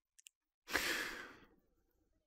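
A man sighing into a close microphone: one breathy exhale a little under a second long, fading out, after two faint mouth clicks.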